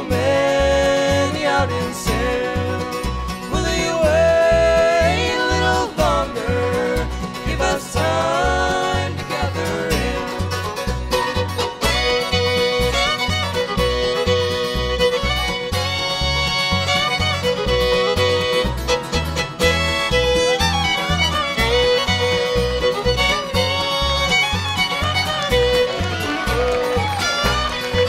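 Live bluegrass band playing a gospel song's instrumental break: fiddle taking the lead over banjo, mandolin, acoustic guitar and upright bass, with the bass keeping a steady, even beat.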